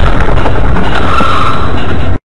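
Car noise picked up by a dash-cam microphone: loud and overloaded rumble of engine and road, with a brief high tone just after a second in.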